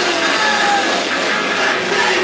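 Live rock band playing loud and without a break: a drum kit with amplified, distorted guitars.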